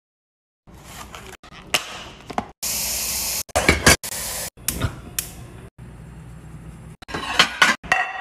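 Silence, then from about a second in a string of short kitchen sounds: tap water running hard into a stainless steel pot, between clinks and knocks of dishes and glassware. The loudest knocks come near the end, as a glass baking dish is handled.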